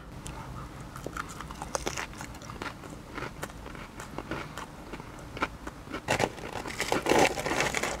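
A man biting into and chewing a piece of battered fish and chips close to the microphone: scattered small crunches and mouth clicks, busier around six to seven seconds in.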